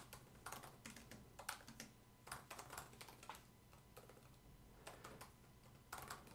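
Faint typing on a computer keyboard: irregular key clicks in short runs with brief pauses between them.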